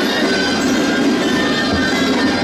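Gaita shawms playing a street tune: reedy, sustained notes that run without a break.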